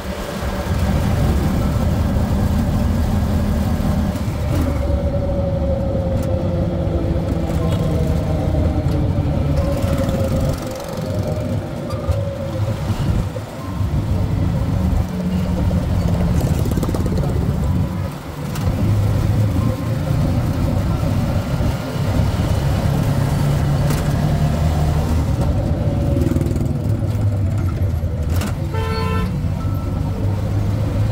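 Engine and road noise of a vehicle driving through city traffic, steady apart from a few brief dips. A horn honks in short repeats near the end.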